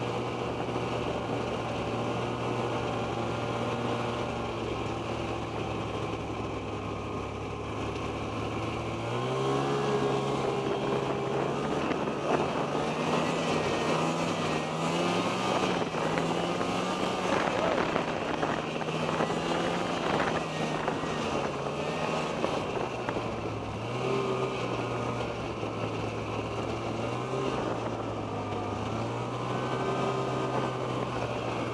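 Snowmobile engine running under way, heard from the rider's seat. About nine seconds in it speeds up and gets louder, runs harder with the pitch wavering for a dozen seconds, then eases back and picks up again near the end.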